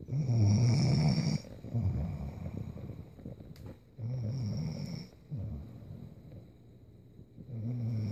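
A woman snoring in deep sleep, one loud snoring breath about every four seconds; the first snore is the loudest.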